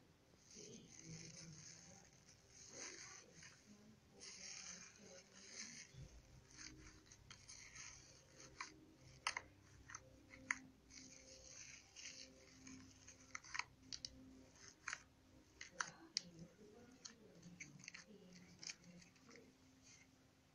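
Faint crackling and popping of bubbly slime as a hand presses and pokes into it: scattered small clicks and pops, coming more often in the second half.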